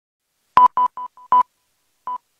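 Five short electronic beeps at one pitch in quick, uneven succession over about a second, some louder than others, like a dialing or signal tone used as an intro sound effect.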